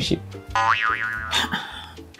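A cartoonish 'boing' comedy sound effect, a pitched tone that slides up and back down about half a second in, over soft background music.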